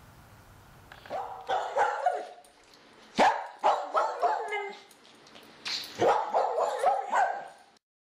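A dog barking and yipping in a string of short calls, which stop suddenly near the end.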